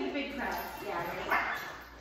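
A puppy barking, with people's voices around it.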